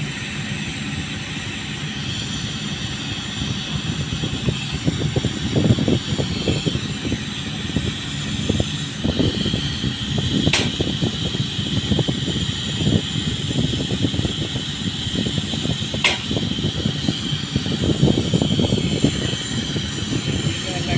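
Paint-spraying rig running on a pipeline coating job: a steady mechanical drone with a constant hiss over it, and two sharp clicks, one about halfway through and one later.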